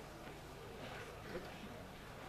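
Faint voices of people talking quietly in the background during a lull between speeches, over a low steady hum.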